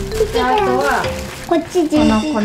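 Clear plastic bag of cookie-dough ingredients crinkling as a child handles it. A small child's high voice is heard over it, and steady background music plays throughout.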